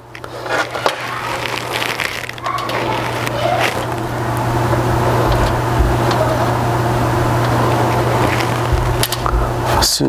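Steel fish tape being worked from its reel, a continuous scraping rattle with small clicks, over a steady low hum.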